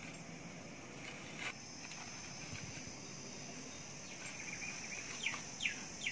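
Faint background of a bird chirping in a run of short falling notes, a few to a second, starting about four seconds in, over a steady high insect-like drone; one light click about one and a half seconds in.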